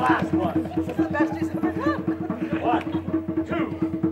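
Drum roll: rapid, steady drum strokes held as the suspense build-up before a knife throw, with crowd voices murmuring over it.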